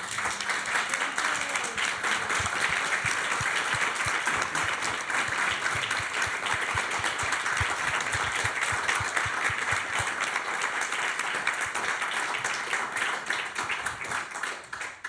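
Audience applauding: a dense, steady clapping that begins abruptly and thins out near the end.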